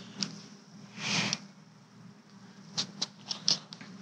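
Faint handling noise: a short rustle about a second in and a few light clicks in the last second, over a low steady hum.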